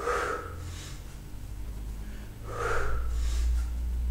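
A man breathing forcefully through pull-ups: two loud, hard breaths, one right at the start and another about two and a half seconds later, over a low steady hum.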